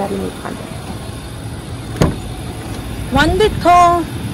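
A single sharp click of an SUV's door latch as the door is opened, about halfway through, over a steady low rumble. A voice comes in near the end.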